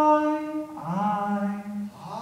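A voice singing long held notes: one steady note, then a slide into a lower note held from about a second in.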